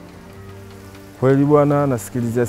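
A short pause with faint steady background hiss, then about a second in a man's voice holding one long, level vowel sound, like a drawn-out hesitation.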